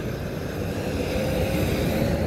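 Steady road traffic noise, with a motor scooter's engine running close by as it passes along the road.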